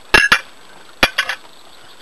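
A few sharp clicks and knocks of tableware being handled at a breakfast table. A close pair comes just after the start, and a single click about a second in, followed by a couple of fainter ticks.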